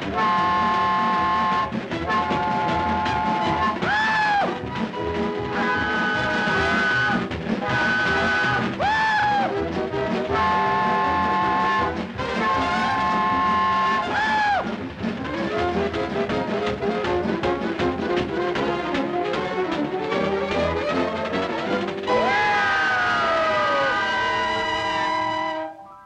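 Orchestral cartoon score with loud brass, broken every few seconds by swooping whistle-like notes that rise and fall, and a long falling glide near the end. The music cuts off suddenly just before the end.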